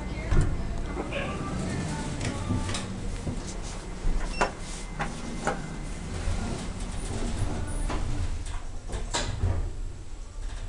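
An elevator in operation: a steady low hum with several sharp clicks and knocks, the loudest about half a second in and around four seconds in, over voices in the background.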